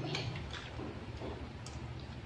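A few light clicks of spoons and chopsticks against ceramic bowls while eating, over a low steady hum.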